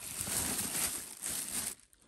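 Clear plastic bags crinkling as they are handled and shifted, a dense rustle that stops shortly before the end.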